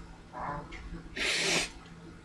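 A man sniffing hard through his nose: a soft intake about half a second in, then one loud, sharp sniff lasting about half a second near the middle.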